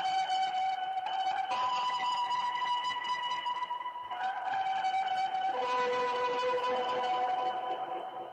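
Slow keyboard music of long, steady held notes, the pitch stepping to a new note every one to three seconds and fading near the end.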